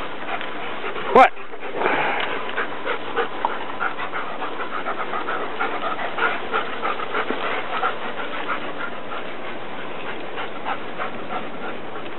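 German shepherd dogs playing: one sharp bark about a second in, then the quick panting and scuffling of rough play that fades out after about eight seconds.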